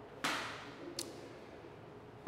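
Faint handling noise at a pulpit: a short soft rustle about a quarter second in, then a single small click at about one second.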